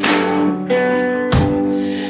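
Live rock band playing: electric guitars ringing out sustained chords over a drum kit, with two hard drum and cymbal hits, one at the start and one about a second and a half in.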